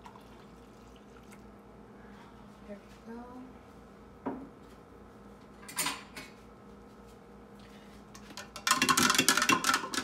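A metal spoon stirring a drink briskly in a plastic tumbler: a loud, fast run of clinks and scrapes for about two seconds near the end. Before it, only a few soft knocks and a short rustle.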